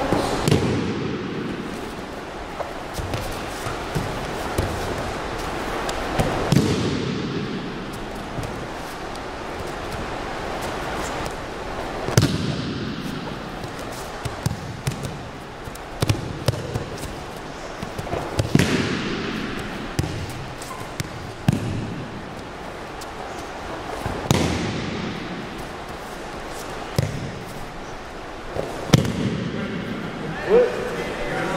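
Aikido throws: a training partner's body slapping down onto the gym mat in a breakfall about every six seconds, six landings in all, each a sharp hit followed by a rush of cloth and shuffling bare feet, with smaller thumps of stepping between them and the hall's echo after each landing.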